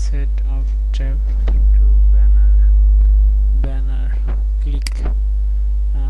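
Loud, steady low electrical mains hum picked up by the recording microphone, swelling louder for about two seconds in the middle, with a few faint sharp clicks.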